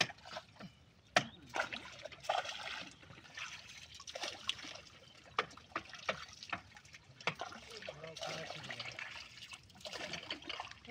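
Water trickling and splashing as long bamboo poles are dipped into and drawn out of the canal beside a wooden boat, with several short, sharp sounds scattered through.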